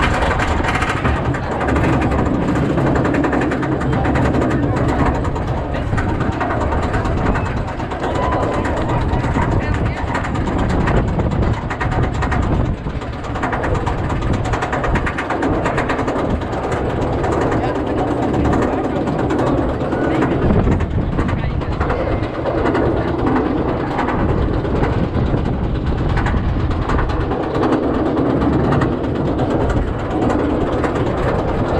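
Roller coaster train being hauled up a chain lift hill: a steady, rapid clatter of the lift chain and anti-rollback ratchet.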